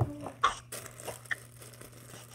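Handling noises: a knock at the start, then a short, loud crinkle about half a second in and a few fainter crinkles from a plastic zip-lock bag being handled.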